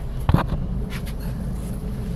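Steady low engine rumble heard from inside a bus, with one short knock about a third of a second in.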